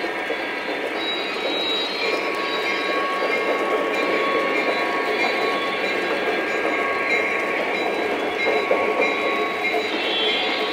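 Lionel O-gauge model freight train hauled by GP35 diesel locomotives, running steadily along the three-rail layout: a continuous rolling rumble with faint thin tones that come and go.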